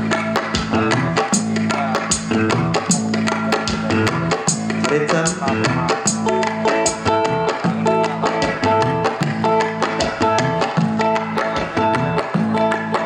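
Dangdut band playing an instrumental groove in a soundcheck: a repeating bass line with gendang hand drum and drum kit keeping a steady beat and guitar over the top. About halfway through, a higher two-note figure starts repeating over the groove.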